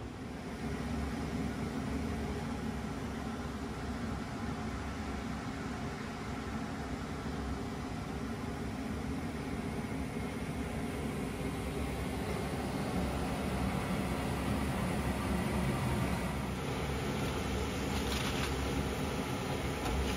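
A steady whirring hum, like a fan or machine running, with a few light clicks near the end.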